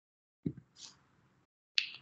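Dead silence broken by a few short sounds: a sharp click about half a second in, a brief hiss just before the one-second mark, and another sharp click near the end.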